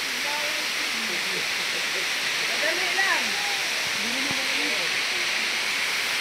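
Steady rush of falling water from a waterfall, a constant hiss, with faint voices talking underneath.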